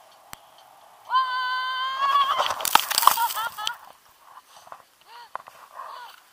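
A long, high-pitched squeal held for about a second, starting about a second in, then a loud burst of rustling and scraping as the tandem paraglider touches down in snow; short high cries follow.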